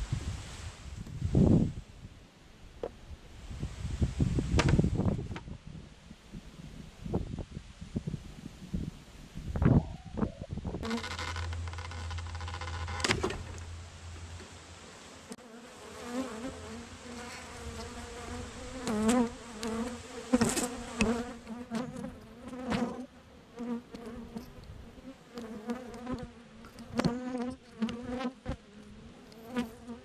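Honeybees buzzing over an opened hive, a steady hum whose pitch wavers as bees fly close past. Several loud knocks and thumps from the hive boxes being handled come first, in the opening ten seconds.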